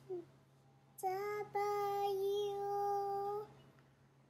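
A young girl singing unaccompanied: a brief falling sound right at the start, then about a second in a short sung note followed by one long note held steady for about two seconds.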